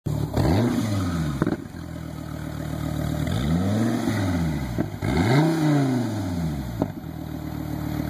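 2013 SRT Viper GTS's 8.4-litre V10 being revved while parked, three blips that rise and fall in pitch. The first comes about half a second in, and two more follow close together near the middle. Between and after them the engine settles back to a steady idle.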